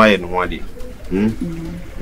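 A man talking, with a bird cooing in the background.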